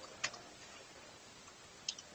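Two sharp clicks about a second and a half apart over a faint steady hiss.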